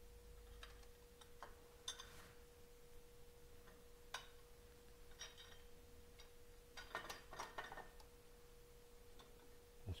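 Near silence: a steady faint hum tone, with a few faint metal clicks and ticks as steel bolts are hand-threaded into a Harley-Davidson rocker box housing. The clicks come about two seconds in, again around four seconds, and as a small cluster near seven seconds.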